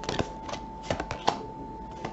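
Tarot cards being handled and pulled off the deck, making about six short, sharp card snaps and flicks over two seconds.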